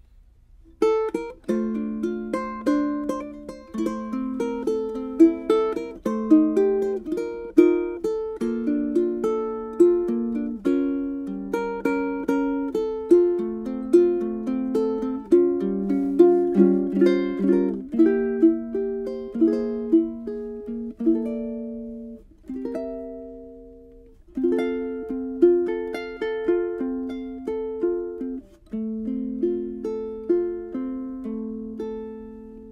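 Acoustic ukulele fitted with an ebony saddle, played solo fingerstyle: a plucked melody over chord notes, starting about a second in. There is a short pause about three quarters of the way through while one note rings out.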